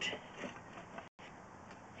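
Faint, even background noise with no distinct event, cut to total silence for an instant about a second in.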